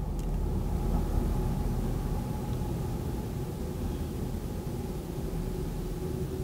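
A steady low rumble, even in level with a slight swell about a second in.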